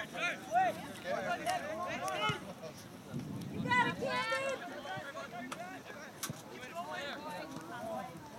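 Indistinct voices of sideline spectators talking and calling out, with no clear words, in a few short bursts.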